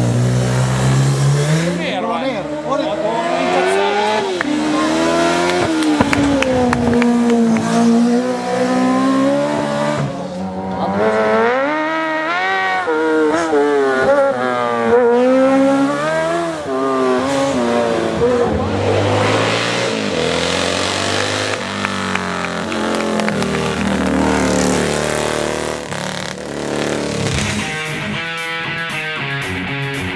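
Racing sidecar outfits' engines revving hard as the outfits pass one after another through hill-climb bends. The pitch rises and falls repeatedly as the throttle is opened, closed and the gears change.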